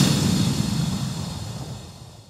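Outro sound effect: a bright, hissing burst with a low rumble underneath, dying away steadily over about two seconds until it fades out.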